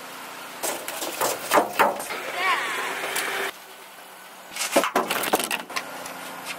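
Fishing rods knocking and clattering as they are handled and pulled from a pickup truck bed: a quick run of sharp knocks about half a second in, and another about five seconds in. Between the two runs, a short wavering voice-like sound.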